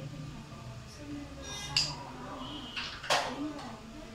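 A carrom striker is flicked across the board and clacks into the carrom men. There are two sharp clacks about a second and a half apart, and the second one is louder.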